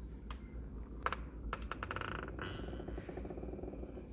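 A few sharp clicks and knocks from a door's lever handle and latch as the door is opened, the loudest about a second in.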